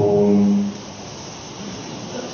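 A man's voice over a mosque microphone holds the last drawn-out syllable of a chanted Arabic sermon for a little over half a second, then stops, leaving faint steady room hiss.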